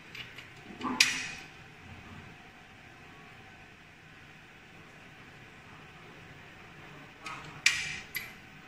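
Sharp clicks and knocks of a small tube being handled and set into a plastic test-tube rack: a loud one about a second in and a few more near the end, over quiet room background.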